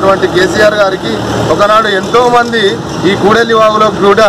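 A man speaking Telugu steadily into a handheld microphone: speech only.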